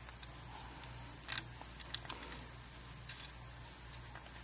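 Scattered small metal clicks of a little Allen wrench working the screws of the scope rings as they are snugged down, the loudest about a second in, over a faint steady hum.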